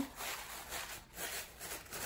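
Soft rustling and crinkling of paper coffee-filter petals as hands scrunch and shape a paper flower, in a few uneven rustles one after another.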